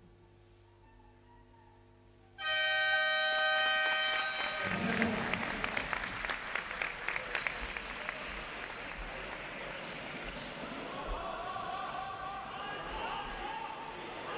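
Near silence, then about two and a half seconds in the arena horn (scoreboard buzzer) sounds one steady two-second blast that marks the end of a minute of silence. The crowd in the hall then applauds, and a basketball bounces on the court.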